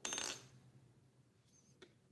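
A short metallic clink of small light metal, ringing briefly, then a faint click near the end.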